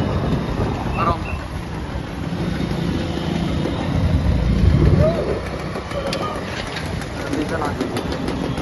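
Road traffic and motorcycle engines heard from a moving motorbike, with a steady rumble that swells about halfway through, and a few brief shouted voices.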